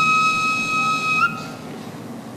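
Background music: a flute holds one long steady note, with a short turn at its end just over a second in, and then drops away, leaving a quieter stretch.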